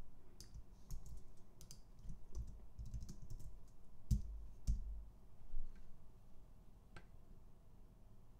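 Computer keyboard keystrokes and clicks: a scattered run of key presses, with two louder ones about four seconds in and one more near seven seconds.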